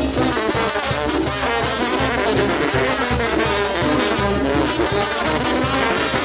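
Mexican banda (brass band) playing a son: trombones and trumpets over a sousaphone bass line, loud and continuous.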